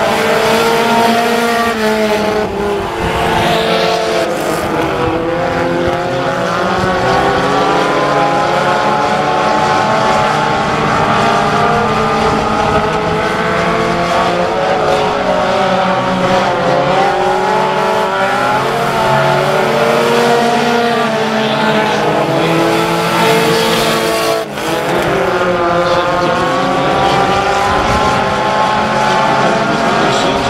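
A field of USRA Tuner class four-cylinder compact race cars running on a dirt oval, several engines revving and easing off at once so their pitches rise and fall over one another. The level drops briefly about 24 seconds in.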